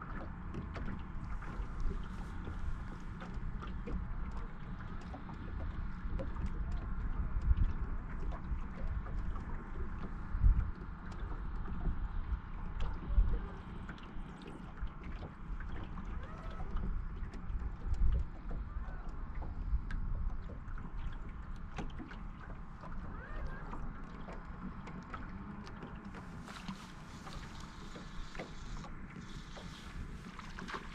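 Small waves lapping and slapping against a fishing boat's hull, with gusts of wind rumbling on the microphone that come loudest about a third and two thirds of the way in.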